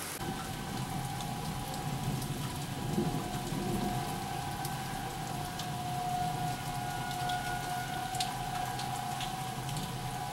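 Steady rain falling, with a low thunder rumble underneath. A steady high tone holding one pitch runs through it and grows stronger after about four seconds.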